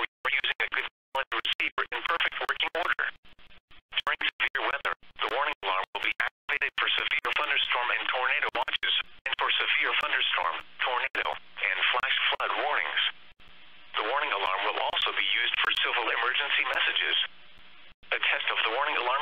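Speech only: NOAA Weather Radio's automated voice reading the weekly warning-alarm test announcement, heard through a thin-sounding radio feed that is cut off above about 4 kHz.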